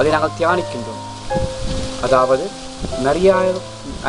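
A man speaking in Tamil in short phrases over background music of soft sustained notes.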